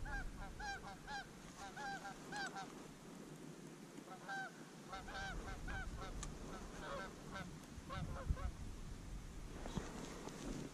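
Flock of Canada geese honking, many short two-note calls overlapping as they fly in toward the decoys, thinning out near the end.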